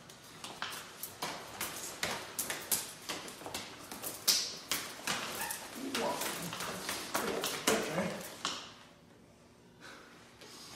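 Rapid, irregular slaps and taps of forearms and hands striking and deflecting each other in Wing Chun chi sau (sticky hands) drilling, with cloth rustle. Short vocal exclamations break in around six to eight seconds in, and the slapping stops about eight and a half seconds in.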